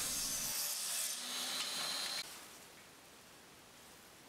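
Steady hissing rub of wood being worked by hand, which cuts off abruptly just over two seconds in, leaving near silence.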